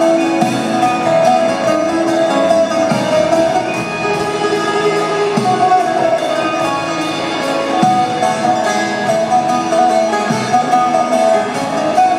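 Live band playing an instrumental passage of a Hindi song: guitar and mandolin over held tones, with a low beat about every two and a half seconds and light, steady percussion ticks.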